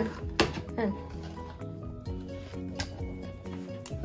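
Background music with held notes, over which scissors snip a few times while cutting a gift box open; the sharpest snip comes about half a second in.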